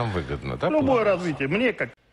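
Speech only: a man speaking Russian, breaking off just before the end.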